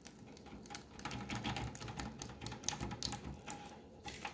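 Sharp knife cutting honeycomb loose along the edge of a wooden foundationless frame: a fast, irregular run of small clicks and crackles as the blade works through the wax.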